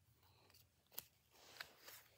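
Faint clicks and slides of Pokémon trading cards being flicked through in the hand. One sharper click comes about a second in, and a couple of softer ones near the end.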